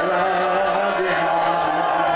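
A man's voice chanting a mournful Shia lament (noha/masaib) in a long, wavering held tone, loud and without pause.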